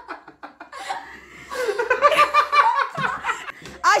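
People laughing heartily, a man among them, in quick repeated bursts that are loudest from about a second and a half in.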